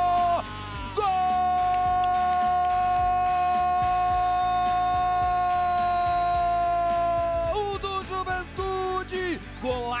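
A football television commentator's long goal cry, one held shouted note lasting about six seconds, followed near the end by a few seconds of excited shouted commentary.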